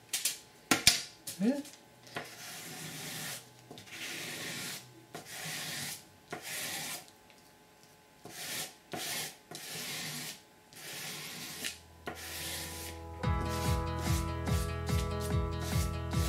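A ruler scraped again and again across a layer of shaving cream on paper, a dozen or so strokes each up to about a second long, clearing the cream off to reveal the marbled print. Background music with guitar comes in about three seconds before the end.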